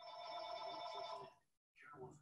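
A steady electronic ringing tone, several pitches held together for about a second and a half, then the audio cuts out completely for a moment.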